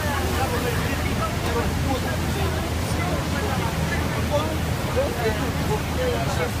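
A tour boat's motor running with a steady low hum under the rush of the Rhine Falls' whitewater, with passengers' voices chattering.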